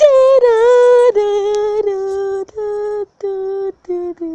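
A girl singing a short meme tune without words: a high held note of about a second, then a run of shorter, lower notes with brief breaks between them, stepping slightly down.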